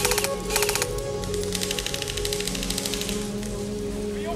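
Automatic airsoft rifle fire: two short rapid bursts in the first second, then a longer burst of about a second and a half, over background music.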